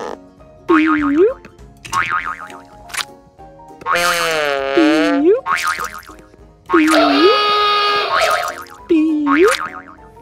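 Playful cartoon sound effects laid over music: a run of springy boing swoops, one near the middle wobbling up and down for over a second.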